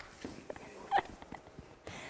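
A few soft scattered knocks on a wooden stage floor, and a brief voice-like squeak about a second in.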